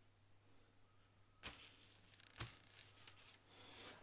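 Near silence, with two faint short clicks or rustles about a second and a half and two and a half seconds in, and a few smaller ticks near the end.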